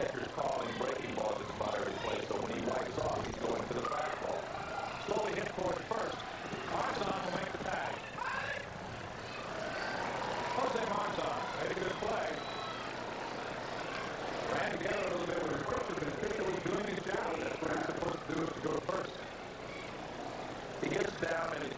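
Ballpark crowd chatter: many voices talking and calling out at once.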